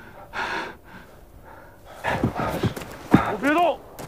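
A man's heavy, hard breath, then from about halfway through a run of wordless strained vocal sounds: short grunts falling in pitch and a rising cry near the end.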